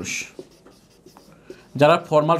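Marker pen writing on a whiteboard, a scratchy stroke at first and then faint light ticks; a man's voice starts again near the end.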